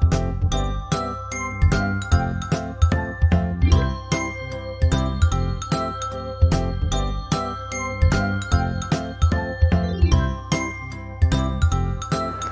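Background music for children: light, tinkling bell-like notes played in quick succession over a steady pulsing bass.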